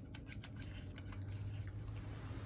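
Puppies eating from a metal food bowl: quick, irregular small clicks of teeth and food against the bowl, over a steady low hum.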